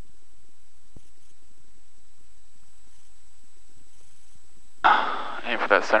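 Steady, quiet cockpit intercom background with a faint low rumble of the Cessna 172S engine muffled by the headset microphone. A man's voice comes in near the end.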